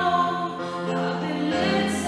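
Several voices singing a slow sacred song in long held notes, moving to a new note about every second, over a steady low sustained note.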